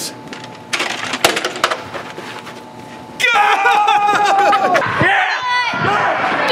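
A few sharp clicks and knocks, then from about three seconds in, loud yelling with one long drawn-out shout.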